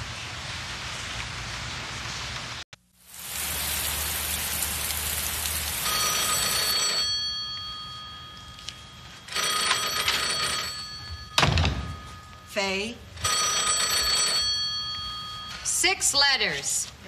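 Office telephone ringing unanswered, three rings each lasting about two seconds, with a short spoken word between the second and third. Before the rings there is a steady noisy wash that cuts off abruptly about three seconds in.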